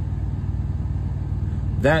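A steady low rumble with a fast, even pulse, like an idling engine, runs under the pause. A man's voice says one word near the end.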